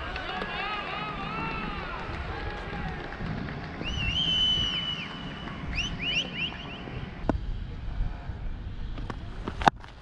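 Distant voices calling out across an open cricket ground in long, drawn-out shouts, with a high held call about four seconds in and quick short calls around six seconds. A single sharp tap comes just before the end.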